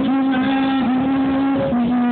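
A man singing karaoke into a microphone through a PA speaker, holding long, steady notes that step from one pitch to the next, over a backing track.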